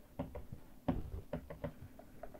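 Stylus pen tip tapping and knocking on a tablet writing surface during handwriting: a string of irregular short taps, the loudest about a second in.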